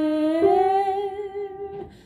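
A soprano voice humming a held note that steps up to a higher note about half a second in, then fades away near the end.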